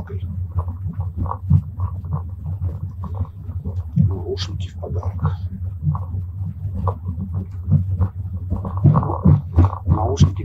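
Steady low rumble of a moving train carriage, with small irregular clicks and rustles of hands handling and untangling a pair of plastic earphones.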